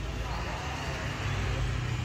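Steady low rumble of background noise, like distant road traffic, with faint voices in the background.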